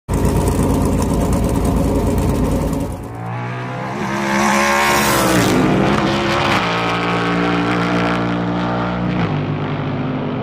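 Garage 56 Chevrolet Camaro ZL1 NASCAR race car's V8 engine running hard on track. The sound changes about three seconds in, swells and dips in pitch as the car passes, then the engine note drops in steps twice, once near the middle and once near the end.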